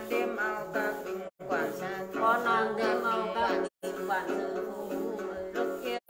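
A woman sings a Then chant, accompanied by the plucked notes of a đàn tính, the long-necked gourd lute of the Tày and Nùng. The sound cuts out completely for a moment twice.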